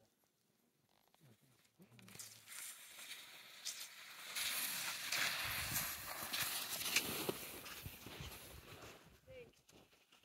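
Scuffling and crunching in snow as a husky is rubbed and wrestled, building up and loudest in the middle before fading. There are a couple of short whines or grumbles from the dogs.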